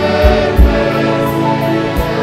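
Live gospel worship: a congregation and choir singing together over a band with a steady drum and cymbal beat.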